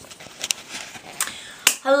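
Handling noise from a handheld camera being moved and passed between people: a few sharp knocks and taps over low rustling. Near the end a woman laughs.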